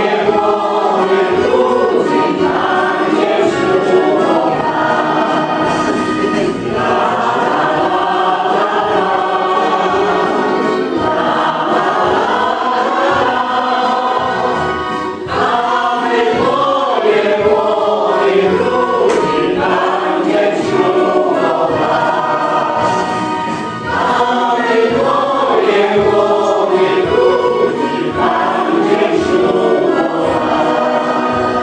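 Choral music: a choir singing in sustained, flowing phrases, with short breaks between phrases near the middle.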